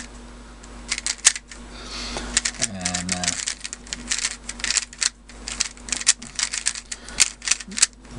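YJ ChiLong 3x3 speedcube being turned quickly by hand: rapid plastic clicks of the layers turning, a few at first and then a dense run in the second half. The cube has just been lubricated and its tensions set.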